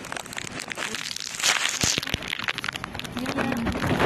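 Rustling handling noise on a handheld phone's microphone, full of small crackles and clicks that grow busier through the middle and end.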